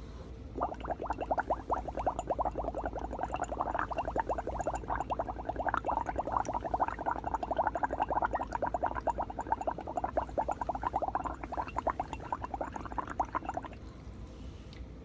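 Breath blown through a plastic straw into water in a small glass beaker, bubbling rapidly and continuously. It starts about half a second in and keeps going without a break until just before the end.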